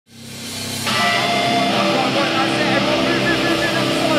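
A live band's sustained amplified guitar drone fades up from silence in the first second, then holds steady, with crowd voices underneath.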